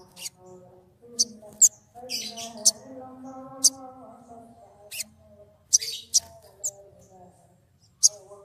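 Male sunbird, an olive-backed sunbird (kolibri ninja), giving loud, sharp, high-pitched chirps about ten times at irregular intervals. A fainter lower voice carries on underneath.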